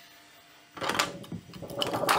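Textured PEI spring-steel build plate being pulled off a Bambu Lab 3D printer's bed and handled, scraping and clattering in two loud stretches starting about a second in.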